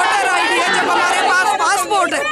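A woman speaking loudly in Hindustani, with chatter from other voices behind her.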